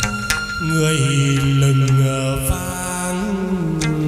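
Chầu văn ritual music: a voice holds long chanted notes that step from pitch to pitch, over sharp percussion clicks.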